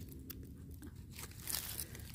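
Faint rustling and crackling handling noise, a little louder about one and a half seconds in.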